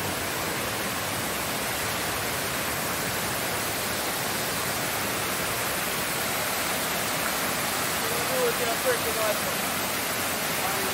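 Steady rush of a waterfall cascading over rock steps. Near the end, a few short sounds of a person's voice rise above the water.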